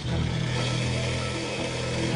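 Kitchen blender motor running steadily, blitzing soup ingredients, with background music underneath.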